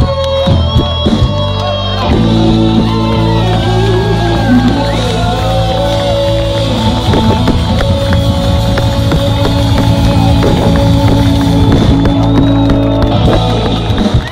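Live rock band with electric guitars, bass, keyboard and drums, loud through the PA. From about two seconds in the band holds one long chord, with drum and cymbal hits over it, the way a song is brought to its end.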